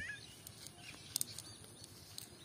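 Cast net being handled on grass: soft rustling of the mesh, with a quick double click about a second in. Faint short bird chirps are heard near the start.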